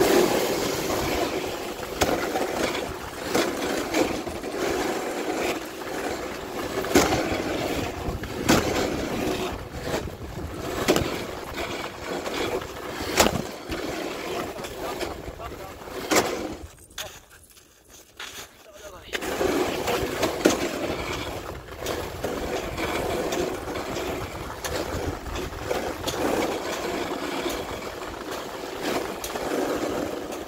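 Dog sled moving over snow: its runners sliding and scraping with many sharp clicks and knocks from the sled, going quieter for a couple of seconds about two-thirds through.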